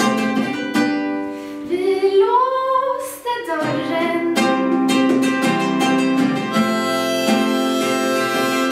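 Live solo folk music: fingerpicked acoustic guitar under a harmonica melody, with one held note bending up and back down about two seconds in.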